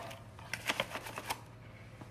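A plastic measuring scoop digging into a bag of protein pancake powder: a few short rustles and scrapes of the scoop against the bag, bunched between about half a second and a second and a half in.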